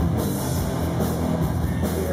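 Live rock band playing, with drum kit and cymbals over a steady beat.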